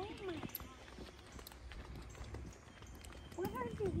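Footsteps on a wooden boardwalk, a faint scatter of knocks, with a short voice sound at the start and a person laughing near the end.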